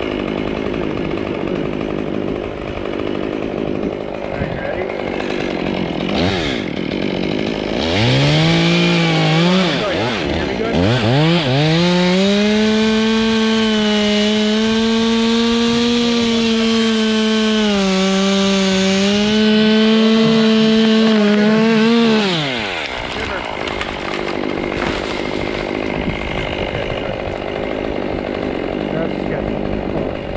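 Stihl MS 201 TC top-handle two-stroke chainsaw revved up about 8 seconds in, easing once, then held at full throttle for about ten seconds as it cuts through the pine's top stem. Its pitch sags briefly under load, and it drops back to idle about 22 seconds in. Steady wind noise on the microphone before and after.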